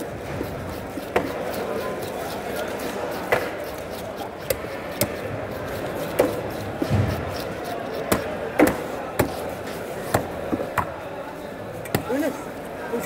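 Scales being scraped off a barracuda with a hand scaler on a wooden board, with sharp, irregular knocks of a knife chopping fish on a wooden cutting board, about ten in all, over background voices.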